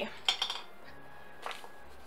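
Pencils clinking together as a 3B pencil is picked out of the set: a sharp clink about a quarter second in and a fainter one about a second and a half in.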